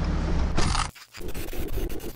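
A low steady rumble in the pickup cab cuts off abruptly about a second in. After a brief silence comes a crackling, scratchy static-glitch transition effect, full of rapid clicks.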